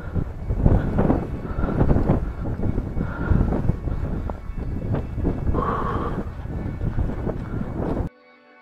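Wind buffeting the camera microphone in irregular low rumbling gusts, mixed with rustling and steps in dry grass as the wearer moves along the bank.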